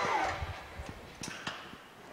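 Faint scattered clicks and light knocks from a pallet turner's mechanism over a low rumble, dying away as the machine sets its load down on the floor.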